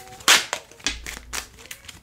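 Tarot cards being shuffled by hand: one sharp snap of the deck about a third of a second in, then a run of lighter card slaps and flicks.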